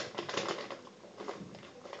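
Small plastic toy figures and their packets being handled: a run of light, quick taps and rustles.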